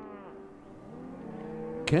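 Plucked-string background music dying away, then faint lowing of cattle. A man's voice begins at the very end.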